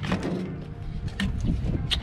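A Chevrolet SUV's rear liftgate coming open, with a click at the start and a couple of small knocks, over a steady low rumble.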